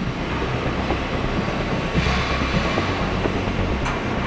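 Steady mechanical noise of construction machinery at work in a large underground cavern, becoming a little louder about halfway through.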